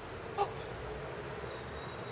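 Steady outdoor background noise, broken once by a single short spoken word about half a second in.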